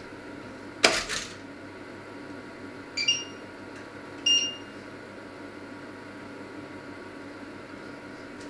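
Touch controls of a glass-ceramic hob being pressed: a sharp click about a second in, then two short high-pitched beeps over a steady low hum.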